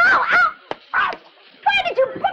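A woman whining and whimpering in short, high-pitched wordless cries that fall in pitch, with a short lull before the last one. A single sharp click comes between the first two cries.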